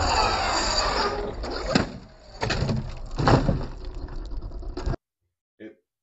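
Team Corally Shogun RC truggy with its 2050 KV brushless motor running on an asphalt lot, with steady wind noise on the microphone. Two sharp knocks, a little under two seconds in and again past three seconds, are the truck striking the box-jump ramp and crashing. The sound cuts off suddenly at about five seconds.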